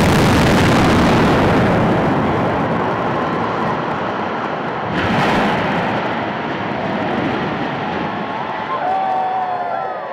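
Building implosion of a concrete-and-steel stadium grandstand: loud demolition blasts and the long rumbling roar of the structure collapsing, with a second sharp blast about five seconds in.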